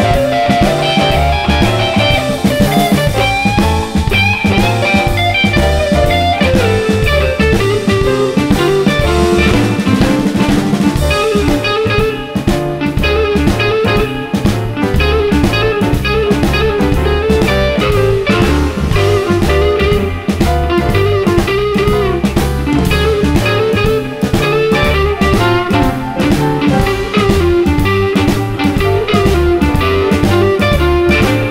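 Live blues band playing an instrumental passage: an Epiphone semi-hollow electric guitar takes the lead line over drum kit, bass and keyboard, with no vocals.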